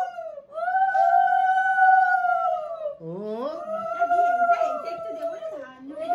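Women ululating in the Bengali 'ulu' manner, the auspicious cry given at a blessing. Two long trilled calls of about two and a half seconds each; several voices overlap in the second.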